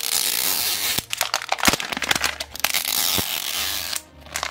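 Printed wrapper being peeled and torn off a Mini Brands Books capsule ball: a continuous tearing hiss for about the first second, then crinkling and crackling with many sharp clicks as the wrap comes away.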